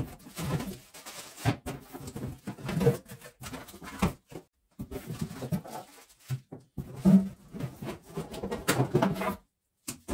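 Vacuum cleaner accessories being unpacked by hand: plastic bags rustling, and a plastic nozzle, metal telescopic tube and ribbed hose bumping and scraping on the table and cardboard box in irregular bursts.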